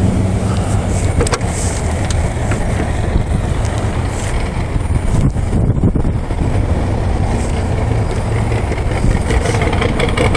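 1976 Corvette's 350 cubic-inch small-block V8 idling steadily, with a few short clicks.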